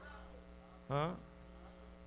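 Steady electrical mains hum, with a man's single short questioning "Huh?" about a second in.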